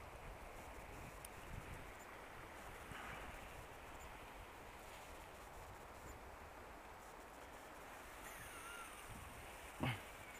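Faint, steady rush of a fast-flowing, turbulent river, with a few small ticks.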